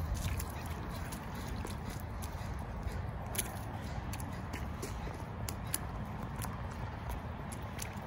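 Child's rubber rain boots stepping and splashing in a shallow muddy puddle: scattered light splashes and scuffs, one a little louder about three seconds in, over a low steady outdoor rumble.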